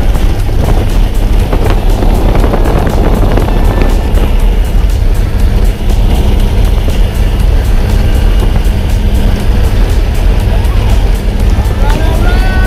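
Skydiving plane's engines running at takeoff power, heard loud and steady inside the cabin through the open jump door, mixed with rushing wind noise.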